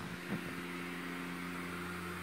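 Built-in blower fan of a Gemmy airblown inflatable running, a steady low motor hum with a faint airy hiss.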